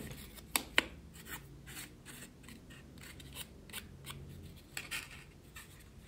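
Quiet hand-handling noises of a small balsa-and-foam nose block and tools on a cutting mat: two sharp clicks a little over half a second in, then scattered faint taps and rubbing as the nose block is pressed into the foam model plane's nose to check its fit.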